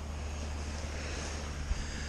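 Steady low rumble with a faint even hiss, an outdoor background with no distinct event apart from a small click near the end.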